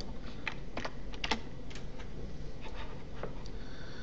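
Computer keyboard keystrokes: a handful of irregular, separate key clicks over a steady background hiss.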